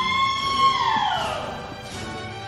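A long, high-pitched whoop from a person in the audience, cheering a graduate. It is held on one note, then falls away in pitch about a second in.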